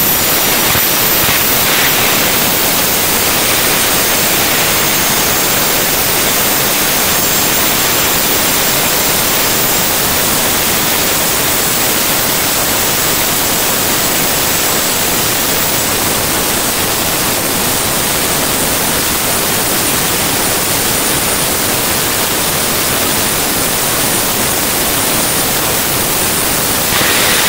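Jet dragsters' turbine engines running on the starting line: a steady, loud rushing noise with a thin, high whine above it.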